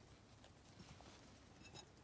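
Near silence: faint background with a few light ticks near the end.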